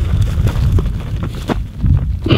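Small dirt bike being kick-started and failing to start: a few sharp clicks from the kick-starter and the engine turning over without catching, under heavy wind rumble on the microphone.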